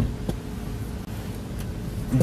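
Cabin sound of a BMW i3 electric car moving off: a steady low rumble of tyres on the road with a faint steady hum and no engine note.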